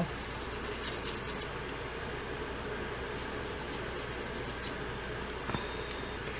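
Hand nail file rubbed across artificial nail tips in quick back-and-forth scratching strokes, in two runs: one in the first second and a half, then another from about three seconds in to nearly five seconds in.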